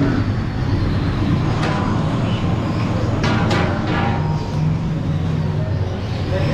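Steady low engine hum of street traffic, with a few sharp metallic clanks, about two and three and a half seconds in, from steel cooking pots and lids being handled.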